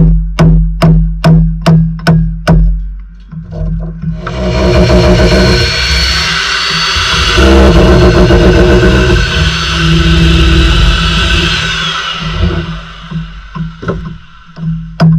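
Background music with a steady beat. About four seconds in, an SDS hammer drill starts boring into brick and runs loudly for about nine seconds before stopping, and the beat then carries on.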